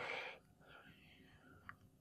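A man's faint breathy whisper in the first half-second, then near silence with a single faint click near the end.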